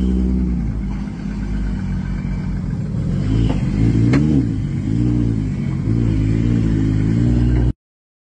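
Drift car's engine running as the car rolls off slowly, with several short throttle blips that rise and fall in pitch and a sharp click among them. The sound cuts off suddenly near the end.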